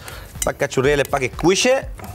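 Light clinks and knocks of glass bowls as cut salad leaves are tipped from one glass bowl into another, with a voice talking over the second half.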